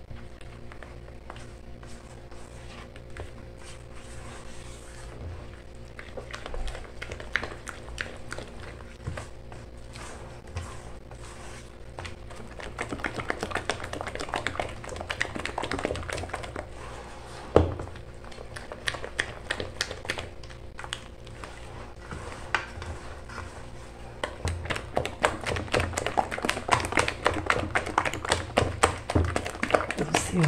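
Wire whisk stirring flour into a soft bread dough in a stainless steel bowl: quick irregular clicking and scraping of the wires against the metal. It gets busier and louder toward the end, with one sharper knock about two-thirds of the way through.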